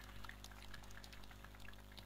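Near silence: a faint steady electrical hum from the sound system, with faint scattered hand claps.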